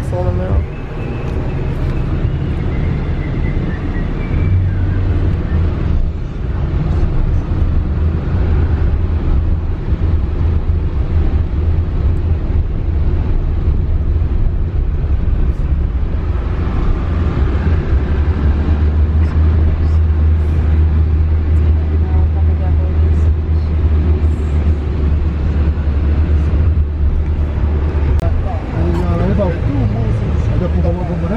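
Inside a moving car in city traffic: a steady low rumble of engine and road noise, growing heavier in the second half before easing near the end.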